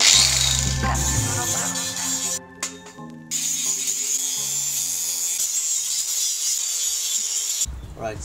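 Angle grinder grinding steel tube, a steady high hiss that drops out briefly about two and a half seconds in and cuts off suddenly near the end, heard under background music with a bass line.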